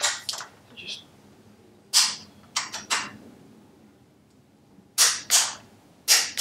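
Ratchet of a torque wrench being swung back and forth to tighten a bolt: short bursts of sharp ratchet clicks, in groups a second or so apart, with a pause a little past the middle.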